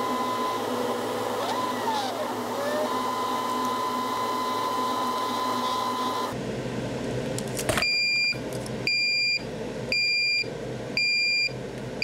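A diode laser engraver's gantry motors whining steadily, the pitch gliding up and down briefly as the head changes speed. Then, from about eight seconds in, four electronic beeps from the machine, about a second apart.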